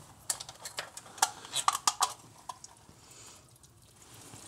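Light metallic clicks and clinks of a hand tool against the front fuel bowl fittings of a Holley 4150 carburetor, about a dozen over the first two and a half seconds.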